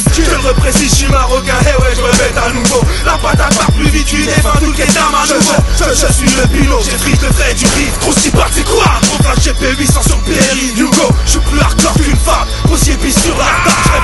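Hip hop track: a beat with a rapper rapping over it, the bass dropping out briefly twice.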